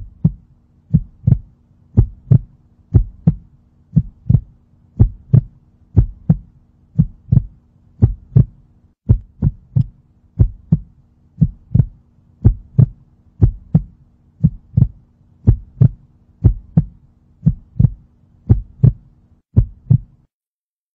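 Heartbeat sound effect: pairs of soft thumps, about one heartbeat a second, over a faint steady low hum.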